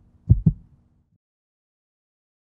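Heartbeat sound effect in a logo sting: one low double thump, lub-dub, about a third of a second in, over a faint steady tone that ends just after a second.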